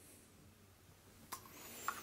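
Mostly near silence, then faint handling noise with two small clicks in the second half, from the plastic ends of a Gamevice gamepad as an iPhone is unclipped from it.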